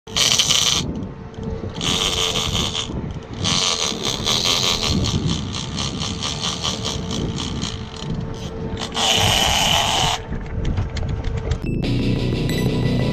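Big-game lever-drag fishing reel on a heavy rod with a fish pulling line: several high-pitched buzzing runs of drag, with rapid ticking between them, over a steady low hum.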